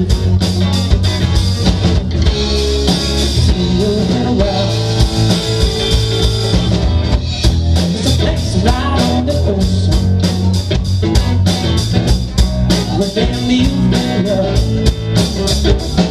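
A live rock band playing a funky song: electric guitar, electric bass and drum kit, with drum hits keeping a steady beat.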